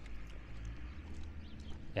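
Footsteps on a paved street, a light, roughly regular tapping over a low steady rumble.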